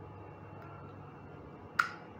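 A DC barrel power plug pushed home into a small network switch's power jack, seating with one sharp click near the end. Power connects and the switch comes on. Before the click there is only a faint steady hum.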